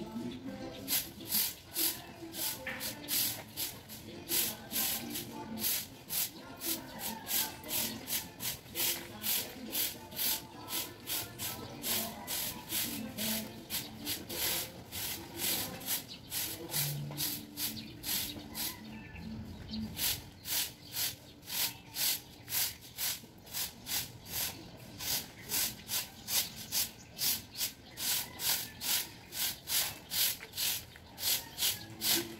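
Broom sweeping a paved street: rhythmic swishing strokes about twice a second, with faint voices in the background.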